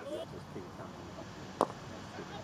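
Quiet open-air ambience with faint distant voices. One short, sharp knock comes about one and a half seconds in.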